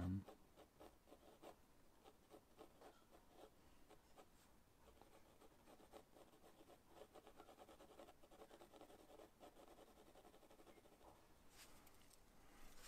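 Pencil shading on sketchbook paper: faint, quick, repeated strokes of graphite rubbing across the page, with a brief low sound right at the start.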